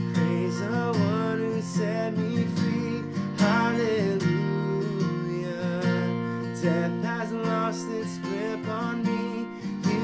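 Acoustic guitar strummed in a steady rhythm, with a man singing a sustained melody over it.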